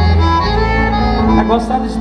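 Live forró band playing an instrumental passage between sung lines: sustained melody notes over a steady bass, the bass line changing about half a second in.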